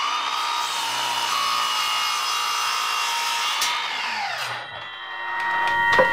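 Battery-powered Milwaukee mitre saw with a freshly fitted blade, its motor whining at full speed as the blade cuts through a small block of wood, then winding down with a falling whine about four and a half seconds in. The new blade cuts quickly and cleanly.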